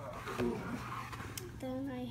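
A voice speaking, starting about one and a half seconds in, over a steady low hum. Before the voice there is a soft hiss.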